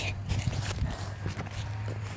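Footsteps of a person running over grass: irregular thuds and rustles.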